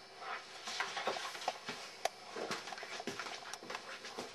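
Irregular knocks, rustles and steps of a person getting up and moving about a room with a hand-held camera, with one sharp click about two seconds in.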